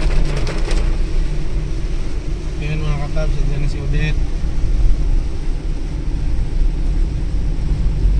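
Inside a moving car in heavy rain: the steady rumble and hiss of the car running on a wet road, with a voice speaking briefly about three seconds in.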